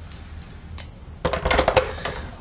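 Small clicks and clinks of a hand driver and screws against a plastic vacuum powerhead housing as screws are put back in: a few single clicks, then a quicker run of clicking about a second in.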